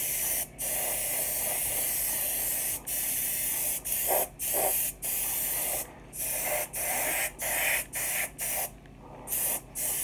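Airbrush hissing with compressed air, cutting out briefly about ten times as the airflow stops and starts.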